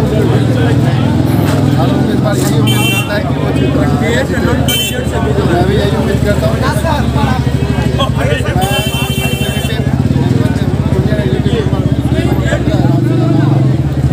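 Busy street noise with a motor vehicle engine running nearby and crowd babble, under a man talking; a few short high-pitched tones sound about three, five and nine seconds in.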